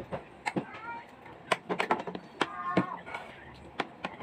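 Spoon and metal bowl clinking against plates during a meal, a string of sharp clinks at irregular intervals. Two short high-pitched calls come between them, one rising about a second in and another near three seconds.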